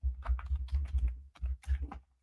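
Quick, irregular keystrokes on a computer keyboard: a search being typed in.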